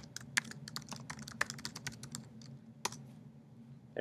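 Computer keyboard keys being typed in a quick run of clicks that thins out near the end, over a faint low steady hum.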